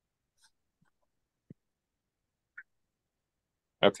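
Near silence broken by two faint, short blips, one about a second and a half in and one about two and a half seconds in. A man says "Okay" right at the end.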